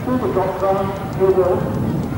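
An indistinct voice speaking in short phrases over outdoor background noise.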